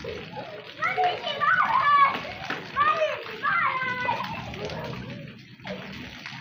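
Girls and a woman shouting excitedly as they play, with several high-pitched voices overlapping. The voices die down briefly near the end.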